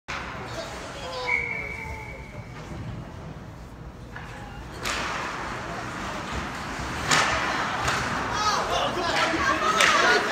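Ice hockey play in a rink: sharp knocks of stick, puck and boards, about five seconds in and again about seven seconds in, with a short steady high tone early on. Spectators' voices rise over the last couple of seconds.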